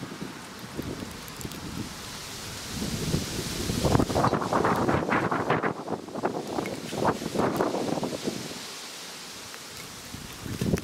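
Gusty wind buffeting the microphone. It swells from about three seconds in and eases off near the end.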